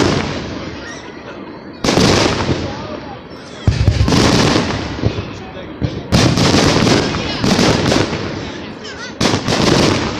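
Aerial firework shells bursting overhead: five sharp booms, roughly two seconds apart, each followed by a long fading rumble of echo.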